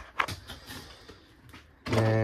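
A single sharp click about a fifth of a second in, followed by a few faint ticks over low room noise.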